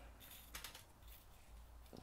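Near silence, with a few faint clicks of small plastic action-figure parts being handled.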